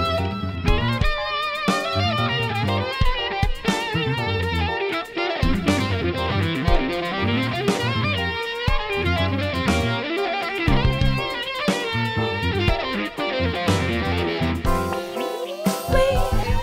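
Electric bass guitar and bassoon playing an instrumental passage: a repeating plucked bass line in the low register under a bassoon line with wavering pitch.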